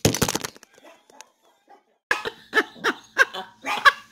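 A woman laughing in short, repeated bursts, starting about halfway through, muffled behind her hands. There is a brief crackle of handling noise at the very start.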